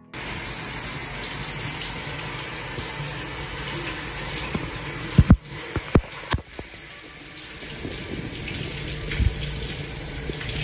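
Shower running, its spray a steady rush of water splashing onto a shower pan and a bare leg, with a few sharp low thumps about five to six and a half seconds in.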